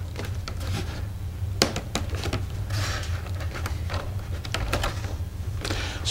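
Light scattered clicks and a soft rubbing from the foam tail stabilizer being pushed into its slot on a foam RC model biplane's fuselage, over a steady low hum.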